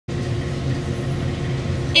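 Steady low rumble of background noise, with no clear pattern or strokes.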